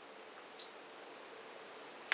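Digital storage oscilloscope's front-panel key pressed to set it running again: one short click with a brief high beep about half a second in, over a faint steady hum.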